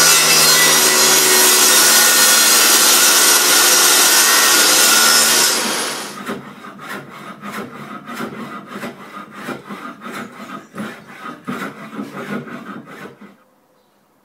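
Table saw cutting through a hardwood board, a loud steady run with the motor's hum under it for about six seconds. It is followed by a quieter run of short repeated strokes, about three a second, that stops abruptly near the end.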